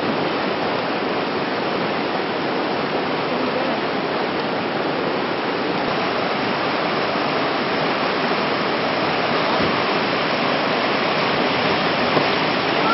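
Whitewater river rapids rushing steadily.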